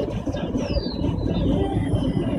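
Steady low road and engine rumble inside a moving car, with a thin high tone gliding down in pitch from about half a second in.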